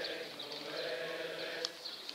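A large group of voices singing together in unison, a sustained, wavering chorus.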